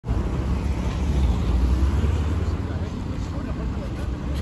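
Steady low rumble of road traffic and vehicle engines, with faint voices.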